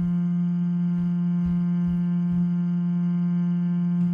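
A single held note from Ableton's Sampler playing a looped, monotone vocal-tone sample: one steady hum-like pitch with many overtones. Faint low pulses recur beneath it as the sustain loop repeats, its loop start and end crossfaded to soften the click.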